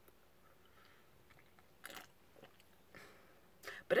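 Faint sipping and swallowing of a carbonated energy drink from a can: a short sip about two seconds in, with a few small mouth sounds after it, and a louder one near the end.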